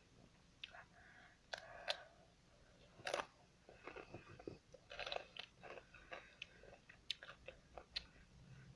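Chewing and crunching of Takis rolled tortilla chips close to the microphone: irregular crunches, with a louder bite about three seconds in.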